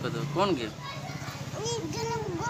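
Small children's voices: a short high-pitched word about half a second in, then from about a second and a half a child's high sing-song voice rising and falling. A steady low hum runs underneath.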